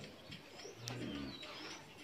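A pigeon cooing once, a low call about half a second long near the middle, with faint chirps of small birds.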